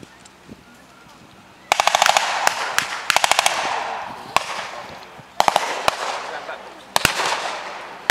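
Blank gunfire in a battle reenactment, beginning nearly two seconds in. Rapid machine-gun bursts are mixed with single shots, and each one leaves a rolling echo.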